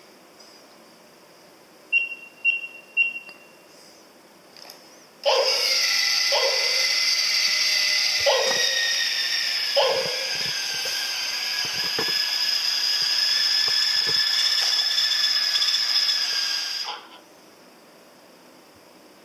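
Teksta 5G robot dog toy giving three short electronic beeps after its head is touched, then its gear motor whining steadily for about twelve seconds as it walks, with a few knocks early on, before cutting off suddenly.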